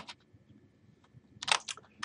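Computer keyboard keystrokes. One click comes at the start, then after a pause a quick run of several keypresses about a second and a half in.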